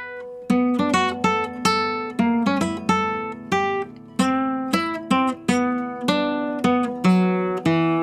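Nylon-string classical guitar playing a gypsy jazz melody one note at a time, each note a thumb downstroke with the nail striking the string, giving a sharp, aggressive attack. About two or three notes a second, ending on a longer held note.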